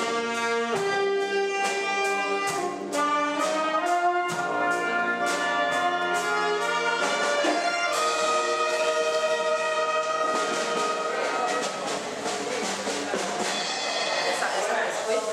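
Wind band of brass, clarinets and tuba playing a tune together, with a steady beat of about two to three strokes a second. About halfway through, the music changes to a denser, fuller passage.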